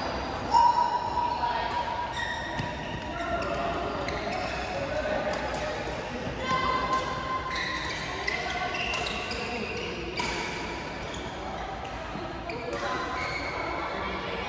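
Badminton doubles in a large echoing hall: racket strings striking the shuttlecock again and again, shoes squeaking on the court mat, and players' voices in the background.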